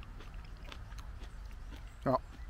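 A person chewing a gooseberry: faint, irregular wet mouth clicks over a low steady rumble.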